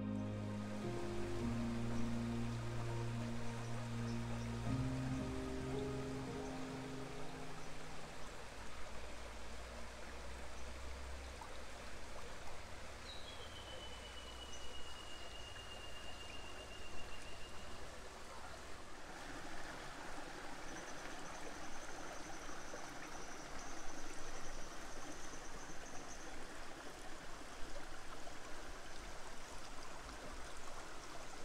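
Soft instrumental music with sustained notes fades out over the first several seconds. It gives way to the steady rush of a shallow creek running over rocks, which grows fuller about two-thirds of the way in. Two long, thin, high whistles sound over the water, the first dipping in pitch and then holding.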